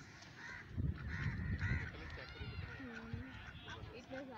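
Ducks calling in a run of short, arched calls, with lower drawn-out calls near the end.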